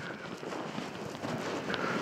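Steady wind noise on the microphone outdoors, fairly quiet and even, with no distinct events.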